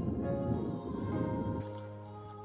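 Background music with steady held notes, over a low noise that cuts off about one and a half seconds in.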